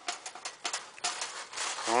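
A wire-mesh live trap with an opossum inside rattling and scraping: a string of sharp clicks and scratchy rustles. There is a denser scraping stretch in the second half.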